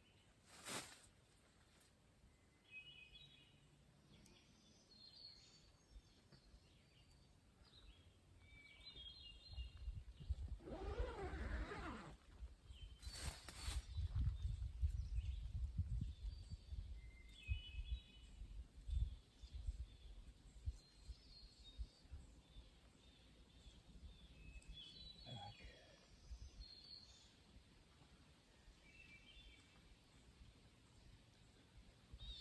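Songbirds singing short, repeated phrases every few seconds in woodland. In the middle stretch, low rumbling gusts of wind hit the microphone, and two sharp clicks stand out, one near the start and one in the middle.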